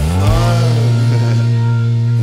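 Live rock band music: a low chord held steady, with a pitched melody line bending up and down over it.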